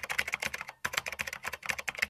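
Typing sound effect: a rapid run of key clicks with a couple of brief pauses, laid over a typed-on date title.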